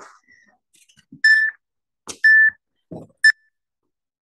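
Electronic workout interval timer beeping three times about a second apart, the last beep shortest: a countdown to the start of the next work interval. A couple of soft thuds fall between the beeps.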